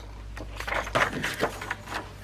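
Paper rustling and soft handling noises as a notebook's pages are turned and pressed flat.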